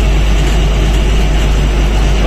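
Loaded truck's diesel engine pulling slowly and steadily up a hill climb, heard inside the cab as a deep, steady drone.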